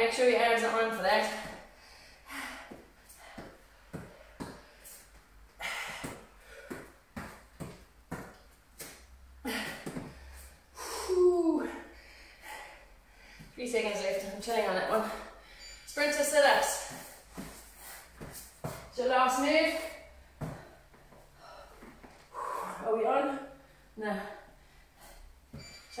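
A woman breathing hard and voicing short effortful exhales and groans every few seconds from exertion, with light taps and knocks between them.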